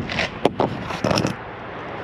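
A few sharp metal clicks and short scrapes in the first second and a half, from the ramp-deck railing post and its steel pins being handled and seated in their brackets.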